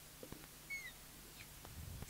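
Quiet room tone with a few faint, short, high chirps about a second in and some faint low knocks.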